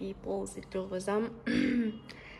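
A woman's voice making short wordless vocal sounds in broken pieces, with a brief rougher burst about one and a half seconds in.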